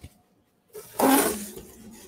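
Cardboard box and bubble wrap being handled: a sudden rustling scrape about a second in that fades off quickly.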